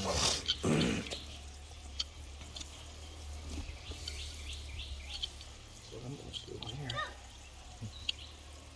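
A brief loud rushing blast of breath-like noise at the start, then faint scattered clicks and scrapes of a hand knife paring an elephant's abscessed toenail over a low steady background rumble.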